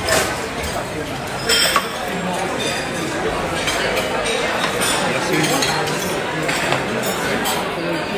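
Busy restaurant dining-room din: many voices chattering together under a steady clatter of plates, glasses and cutlery clinking. A louder clatter of dishes comes about a second and a half in.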